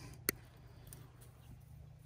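A single sharp snip of pliers cutting through thin green-coated wire, about a quarter second in, followed by a few faint ticks.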